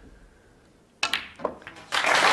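A quiet, hushed arena, then a single sharp click of snooker balls about a second in as the shot on the black is played.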